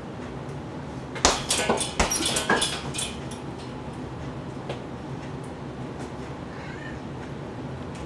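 A cat meowing in a short run of loud calls starting about a second in and lasting about two seconds, with a couple of sharp thumps among them; a fainter call comes near the end.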